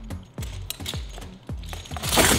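Irregular clicks and rattles from the rows of cheap scooter wheels strung on long axles as the heavy scooter is shifted about on the wooden ramp deck.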